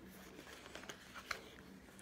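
Faint handling noise of a paper magazine being picked up and turned over: a few light taps and rustles, the clearest about a second in.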